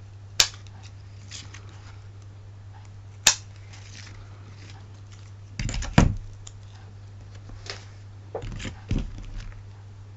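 Scissors snipping card with two sharp single snips, then a cluster of knocks about six seconds in as the scissors are laid down on the table, followed by lighter handling noises of card pieces near the end. A low steady hum runs underneath.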